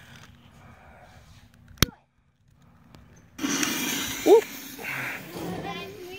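A sharp click about two seconds in, then, after a moment of silence, a steady hiss from a lit firework fuse burning down inside a pumpkin, with a brief voice over it.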